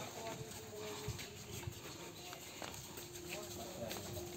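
Faint voices of several men in the background with a few scattered light knocks and shuffles as a heavy wooden box is handled and carried.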